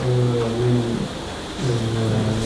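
A man's voice holding long, drawn-out vowel sounds at a nearly level, low pitch. The first lasts about a second. A second one starts a little before the end.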